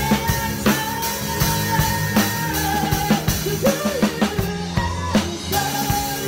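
Live band playing a slow pop ballad, led by an acoustic drum kit: steady bass drum, snare and cymbal strokes under bass and a held, gliding melody line.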